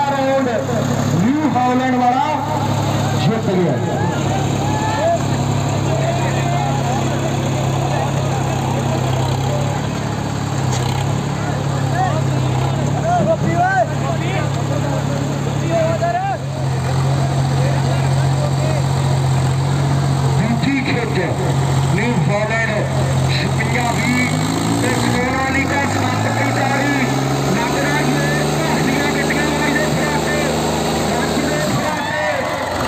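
Diesel engines of two tractors, a Sonalika DI 745 III and a New Holland 5620, labouring under full load as they pull against each other in a tug-of-war: a steady, loud engine drone. About 25 seconds in, the engine note drops lower as the engines are pulled down, while the Sonalika's front end rears up.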